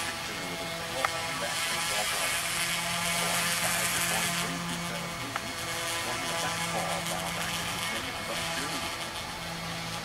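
A 1972 Chevrolet C30 truck running: a low steady engine hum under a hiss that swells and eases, with one sharp click about a second in. A baseball radio broadcast plays low in the cab.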